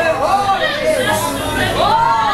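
A man's voice preaching through a handheld microphone and PA system, carrying through a hall.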